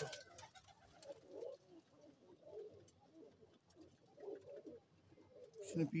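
Domestic pigeons cooing quietly: a string of soft, low coos on and off.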